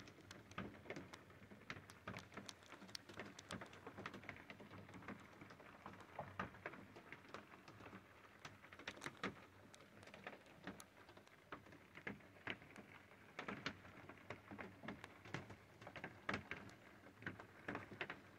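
Faint, irregular light ticking and tapping, several sharp clicks a second, over a low hiss.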